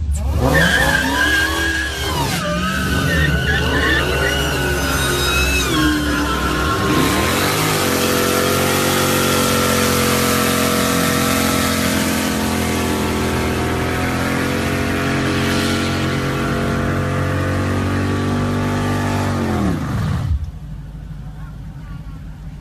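Dodge Challenger SRT Hellcat's supercharged 6.2-litre HEMI V8 doing a burnout, with the rear tyres spinning. The revs are blipped up and down several times, then held high and steady for about twelve seconds. Near the end the revs drop away sharply.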